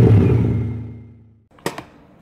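The tail of a channel logo sting: a sustained low chord rings out and fades away over about a second and a half. Then come two or three sharp clicks and faint room noise.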